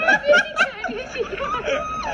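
People laughing, in quick repeated bursts.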